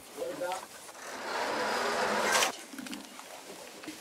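Young Andean condors in their aviary: a brief low pitched call, then a breathy hiss of about a second and a half that cuts off suddenly.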